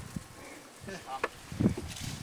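Faint, indistinct voices of people talking, in short snatches about a second in and again near the end.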